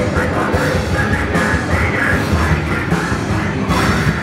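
A beatdown hardcore band playing live and loud: distorted electric guitar, bass and pounding drums through the PA, heard from within the crowd.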